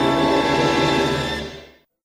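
Orchestral television score music holding a chord, dying away about one and a half seconds in.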